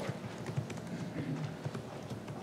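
Meeting-room ambience in a pause between speakers: a faint low murmur and a few light knocks and clicks.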